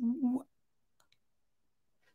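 A man's voice breaking off in the first half-second, then a pause of near silence with one faint click about a second in.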